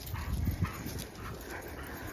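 Dogs moving close around the microphone on a paved trail, with faint short scuffs and rustles over a steady low rumble.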